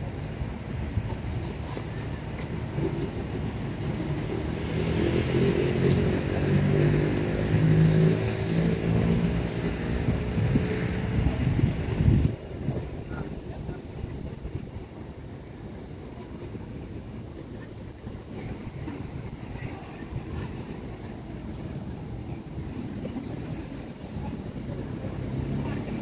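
A motor vehicle passing, its engine note rising and falling over a low rumble. About twelve seconds in the sound drops suddenly, leaving a quieter steady outdoor background noise.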